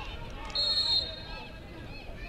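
A referee's whistle blown once, a high steady note about half a second long starting about half a second in, over faint voices of players on the pitch.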